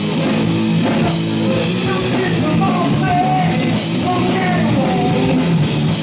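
Live heavy rock band playing, loud and steady: distorted electric guitar, bass guitar and drum kit, with a lead vocal line sung over them.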